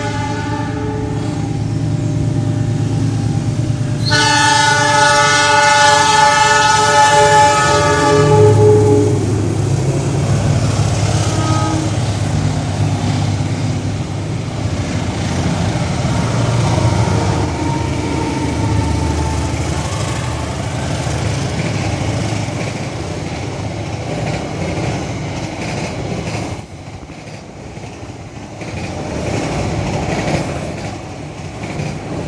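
Diesel locomotive sounding its air horn in two blasts: the first ends about three seconds in, and the second, louder one starts about four seconds in and is held about five seconds. After that comes the engine's low rumble and the clatter of the passenger coaches rolling past on the rails.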